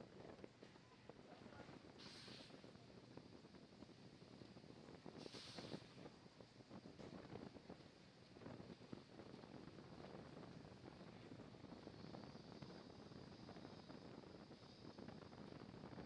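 Faint launch-pad ambience: a low, steady rush like wind on an outdoor microphone, with two brief hisses about two and five and a half seconds in.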